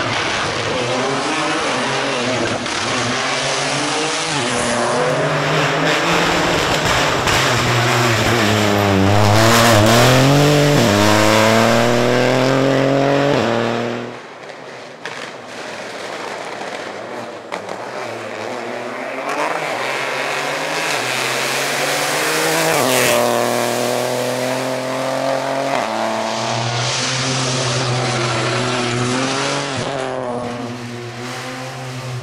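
Rally car engine revving hard and dropping back through gear changes, braking and accelerating as it passes close by. It is heard in two passes split by a cut about halfway through. The first, louder pass climbs steeply in pitch and drops at a gear change about eleven seconds in.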